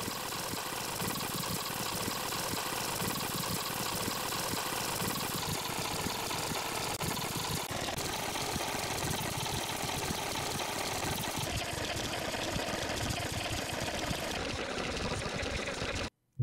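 A steady, dense mechanical buzzing whir that starts and cuts off abruptly, serving as a fast-forward sound effect.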